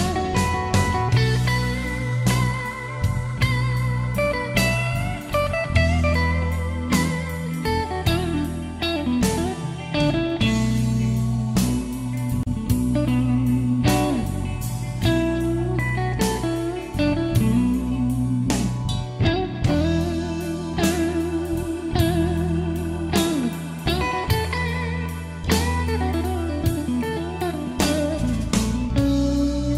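Slow electric blues: an electric guitar lead with bent, wavering notes over bass and a steady drum beat.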